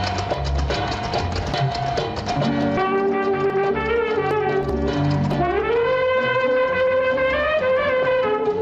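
Instrumental interlude of an old Tamil film song: brass plays held notes over a repeating low beat. About five and a half seconds in, the melody slides up into a long held note.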